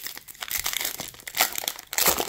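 Plastic wrapper of a 2024 Topps baseball card fat pack crinkling as it is handled and torn open, in a run of short irregular crackles, the loudest about one and a half seconds in.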